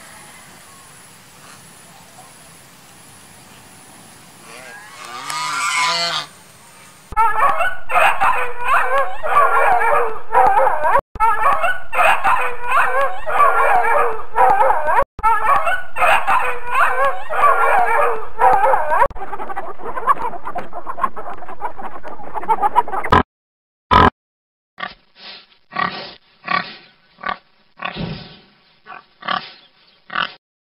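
A series of animal calls. A swan calls once about five seconds in. A loud, dense chorus of overlapping calls follows and runs until past the twenty-second mark, then short separate calls come near the end.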